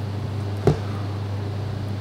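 Steady low hum in the room's background, with one short click about two-thirds of a second in.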